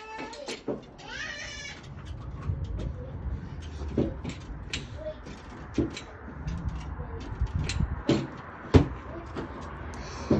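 Home gymnastics bar frame knocking and thudding as a girl swings and moves on it, with the loudest thump near the end as she dismounts. A short high-pitched wavering call is heard about a second in.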